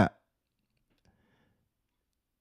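A man's spoken word ends at the very start, then near silence: a gated pause with no other sound above the floor.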